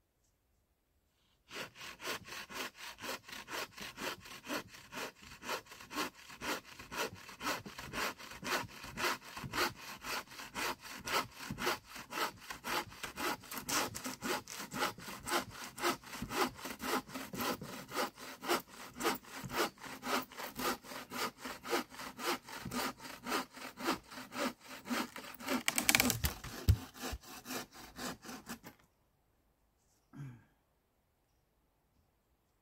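Hand saw cutting through a log with steady back-and-forth strokes, about two to three a second. Near the end there is a louder burst, then the sawing stops.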